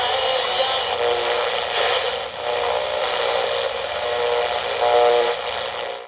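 Radio static: a steady, band-limited hiss with faint wavering tones through it, cutting off suddenly at the end.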